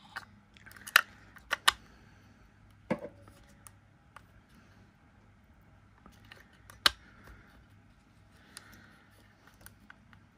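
Sharp small clicks and scrapes of a metal tool and fingers working AA batteries and a metal battery contact in a plastic battery compartment. Several clicks come in the first three seconds and one more near seven seconds, with lighter ticks between.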